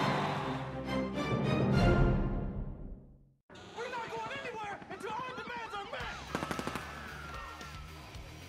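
Music fades out, followed by a brief silence about three and a half seconds in. Then comes a staged action scene with wavering high cries and a rapid burst of gunfire about six seconds in.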